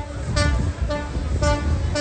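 Horns tooting: several short, steady-pitched blasts in quick succession over a low rumble.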